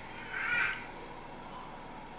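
A single short call, lasting about half a second and coming about half a second in, over quiet room tone.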